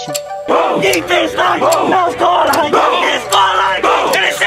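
A football team huddled together, many young men shouting and chanting at once in a pump-up cheer, starting about half a second in, over music with a steady beat.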